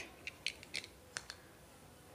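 A few faint, light clicks and ticks of a plastic camera mount being handled in the fingers.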